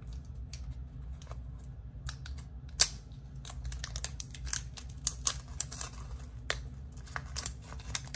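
Hands unwrapping a taped plastic PanPastel set: scattered sharp plastic clicks with some crinkling and tearing, one loud click about three seconds in and busier handling in the second half, over a steady low hum.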